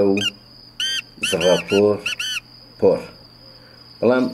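Male black francolin calling: loud, harsh, rhythmic phrases of grating notes, one right at the start, a longer run from about a second in, and another near three seconds. A cricket's steady high trill runs underneath.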